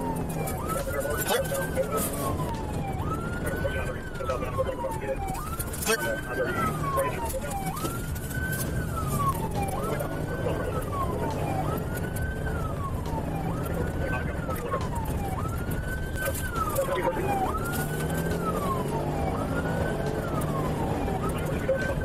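Police car siren wailing, each cycle a quick rise and a slower fall, repeating about every second and a half. It is heard from inside the pursuing patrol car over its engine and road noise at highway speed.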